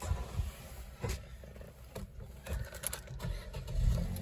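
Vauxhall Corsa's 1.2 petrol engine being started, heard from inside the cabin: a faint low rumble with a few light knocks, growing louder near the end.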